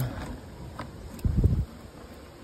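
A brief low thump, about a second and a half in, as a hand presses a bundle of dried roots down into a water-filled plastic cooler, with a couple of faint clicks before it.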